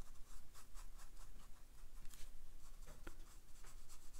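A round watercolour brush stroking and dabbing paint onto cold-press cotton watercolour paper, heard as a run of faint, short scratchy brush strokes.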